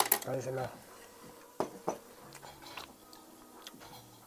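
A ceramic bowl and chopsticks clinking against the table and serving dishes: a sharp clink at the start, then a few lighter knocks about a second and a half and two seconds in, and one more near the end.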